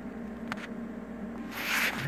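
Quiet handling sounds over a low steady hum: a light click about half a second in and a short hiss near the end.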